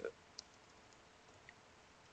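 Near silence with two faint computer-keyboard key clicks about a second apart.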